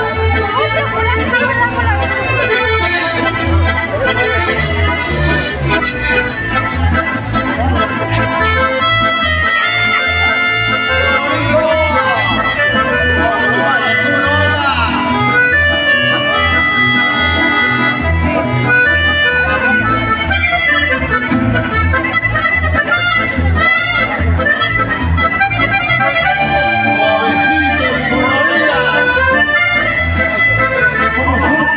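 Live chamamé played by accordions and guitars, the accordions carrying the melody over an even, steady low beat.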